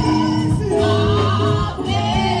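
Live gospel praise music: several singers together over a band of keyboard, drums and electric guitar, with a steady beat and held bass notes.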